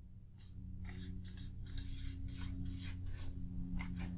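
Felt-tip marker scratching across flip-chart paper in quick short strokes, about four a second, as letters are written.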